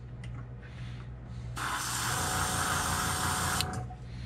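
Airbrush spraying paint through a stencil: one hiss of about two seconds that starts suddenly about one and a half seconds in and cuts off sharply, over a low steady hum.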